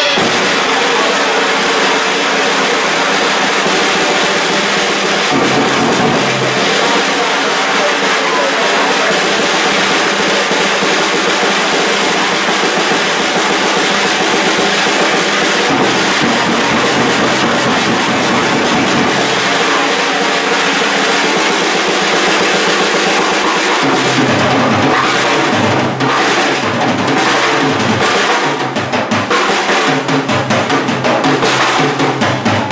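A live rock band playing, led by a Gretsch drum kit with cymbals, snare and bass drum played hard under electric guitar. In the last few seconds the low end turns into a heavier, punched rhythm of bass drum hits.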